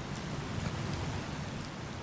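Steady room tone of an auditorium: a low rumble with a faint hiss, picked up by a lectern microphone.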